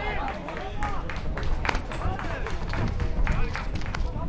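Several voices shouting and calling over one another, over a low rumble, as spectators and players react to a goalmouth save in a youth football match.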